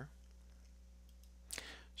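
Near silence with a faint steady low electrical hum, broken about one and a half seconds in by a single short click.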